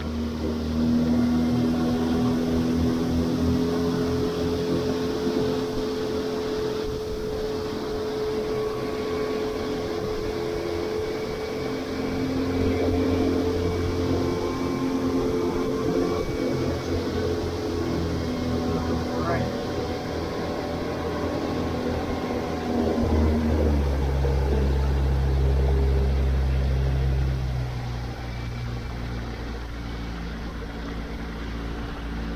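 Outboard motor pushing a small skiff at speed: a steady engine hum over a hiss of wind and rushing water. About 23 seconds in, the engine note drops to a lower pitch.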